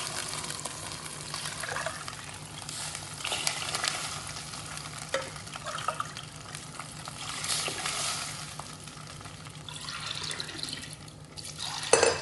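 Ground rice-and-sour-curd batter, then water, poured into hot tempering oil in a steel pot, sizzling and splashing. A sharp metal clink near the end.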